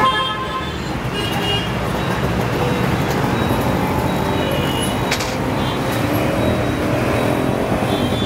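Steady city street traffic: vehicle engines running, with a few short horn toots in the first half.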